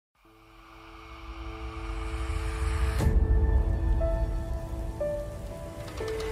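Logo intro music: a noisy swell builds for about three seconds into a sudden hit, followed by a deep rumble and a few held notes.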